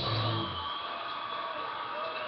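Guitar chord ringing out after being struck, its low notes fading within the first second while the higher notes keep sounding.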